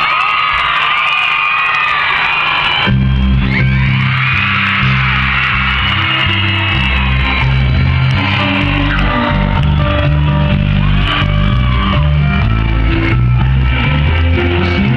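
Crowd cheering and whooping with many high-pitched voices; about three seconds in, a live band starts a song with strong bass notes, and the crowd keeps cheering over the music.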